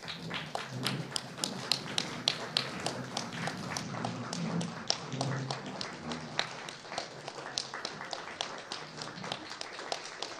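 A roomful of people applauding: many hands clapping, irregular and steady throughout.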